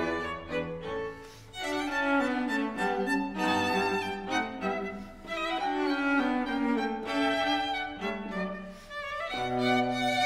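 String quartet of two violins, viola and cello playing bowed phrases of a classical-style piece, with short breaks between phrases.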